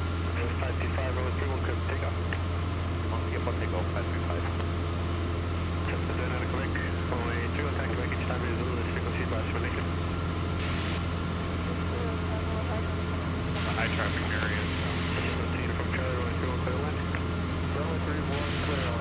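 Super Decathlon's four-cylinder Lycoming engine and propeller droning steadily in cruise flight, heard from inside the cockpit.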